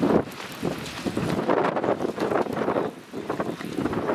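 Strong winds from a severe thunderstorm gusting hard against the microphone, loud and uneven, surging and easing every second or so.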